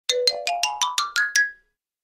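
A short musical intro jingle: eight quick notes climbing step by step in pitch, the last ringing out briefly and fading about a second and a half in.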